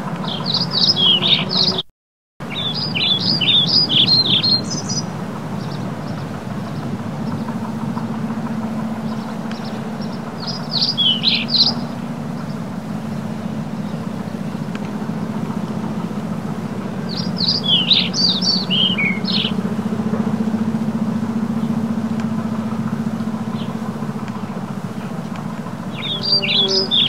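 A small bird chirping in four quick bursts of rapid, high notes, over a steady low hum. The sound cuts out completely for a moment about two seconds in.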